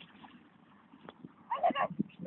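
Faint outdoor background, then near the end a brief high-pitched vocal call from a person.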